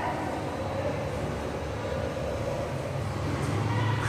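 Steady low rumble and hiss of room background noise with no distinct events.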